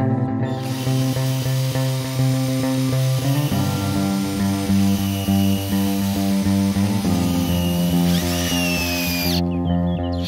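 Background music, with chords changing every few seconds, plays over a cordless drill running as it bores a hole into a tree trunk. The drill stops shortly before the end.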